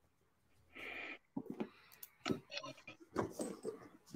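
A person's faint, stifled laughter: a short vocal sound about a second in, then a string of brief, broken breathy bursts that build toward open laughing.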